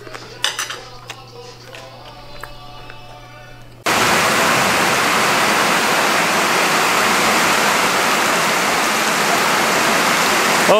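Heavy downpour of rain pelting a lake's surface, a loud, even hiss that cuts in suddenly about four seconds in. Before it there are only a few faint clicks and knocks.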